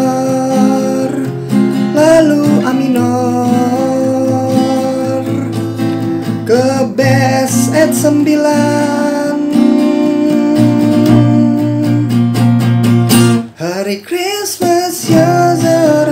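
Acoustic guitar strummed through an F minor, A minor, B-flat chord progression, with a man singing the melody along in wordless syllables; the playing thins out and breaks up near the end.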